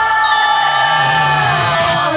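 Final held note of a heavy-metal song after the drums and bass have stopped: one sustained, bright note rings on and sags downward in pitch near the end.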